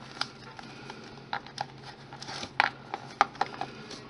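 About ten light, irregular clicks and taps of a small sculpting tool and fingers working polymer clay against a stone on a worktable, over a faint steady hum.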